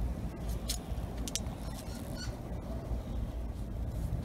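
Grape-vine leaves rustling and brushing against the camera in a few short, sharp ticks over a low, steady background rumble.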